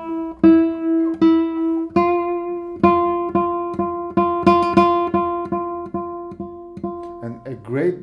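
Darragh O'Connell 2022 'Torres SE 69' classical guitar, with a spruce top and Indian rosewood back and sides, plucked on one repeated note: a few slower strokes, then quicker strokes that grow gradually softer, showing its range of tone colours and dynamics. A man starts talking near the end.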